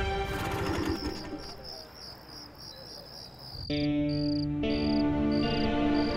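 Crickets chirping in a steady pulsing rhythm, several chirps a second, as background music fades out. Soft sustained music comes in about two-thirds of the way through, under the chirping.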